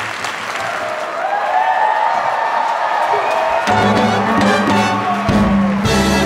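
Theatre audience applauding while a brass-led orchestra plays: held brass notes come in about a second in, and low notes join a little past halfway as the band grows fuller.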